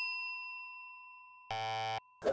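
A bell-like ding from the quiz's music sting rings out and fades away. About one and a half seconds in, a short buzzy tone sounds for half a second and stops suddenly.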